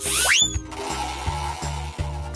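Cartoon sound effects over background children's music: a quick rising whistle-like glide, then a steady hissing whir for a power wrench taking the worn tyres off a truck wheel.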